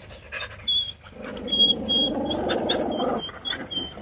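A dog growling, a rough low rumble lasting about two seconds from about a second in, with short high squeaks scattered through it.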